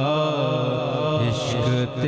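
A man singing an Urdu naat through a microphone, holding a long wavering, ornamented vocal line over a steady low drone. There is a brief break in the voice just before the end.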